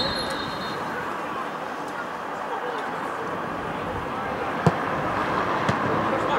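Open-air football ground ambience: a steady hiss with faint distant voices. About three-quarters of the way in comes a sharp thud of a football being kicked, then a softer knock about a second later.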